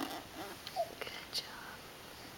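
Quiet, whispery voice sounds: a few short soft murmurs and breaths, with a couple of faint clicks.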